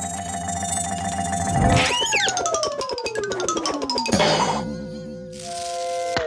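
Cartoon score with sound effects: held musical notes, then a long falling glide in pitch over about two seconds, a wobbling boing-like tone, and a short whoosh near the end.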